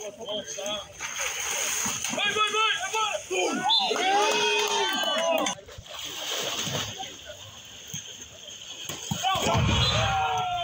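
Water splashing and sloshing as players in a shallow pool lunge and jump for the ball in a biribol rally. Loud shouts from players and onlookers come in the middle and again near the end.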